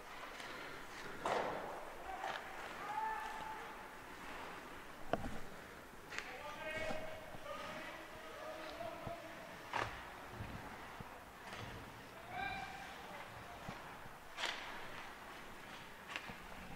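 Faint on-ice sound of an ice hockey game: players' voices calling out, skates on the ice, and sharp clacks of stick and puck, with a few louder knocks about five, ten and fourteen seconds in.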